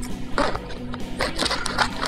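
Background music, with a few short, crisp snips and crinkles as scissors cut open a foil MRE pouch, mostly in the second half.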